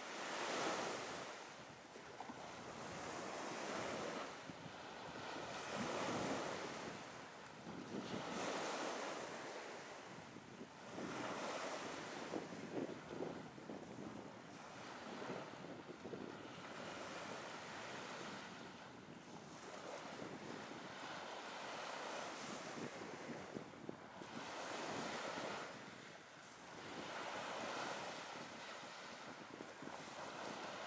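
Sea waves breaking on a beach again and again, the surf swelling and fading every two to four seconds.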